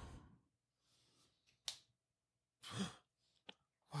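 Mostly near silence, broken by a brief click about a second and a half in and a short breathy exhale from a person close to the microphone near the three-second mark; a voice starts right at the end.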